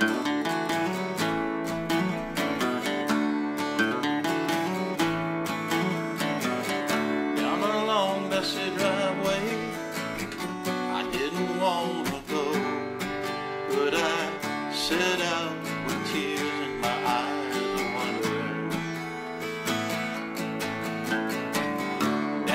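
Acoustic guitars playing the instrumental intro of a country ballad: picked and strummed chords that carry on steadily throughout.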